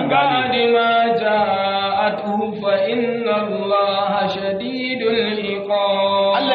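A man's voice chanting the Arabic words 'lak an yakun' in long, drawn-out melodic phrases, each note held for a second or more and sliding slowly up and down in pitch.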